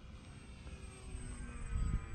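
Faint, distant whine of an electric RC airplane's brushless motor and propeller in flight, turning a smaller replacement prop, with several thin tones that glide slightly. A low rumble grows louder near the end.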